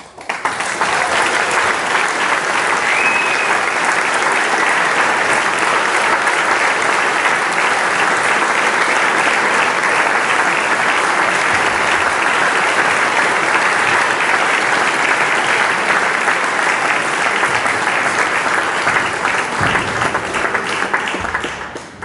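Audience applauding: the clapping breaks out right at the start, as the music stops, stays steady and full, then dies away near the end.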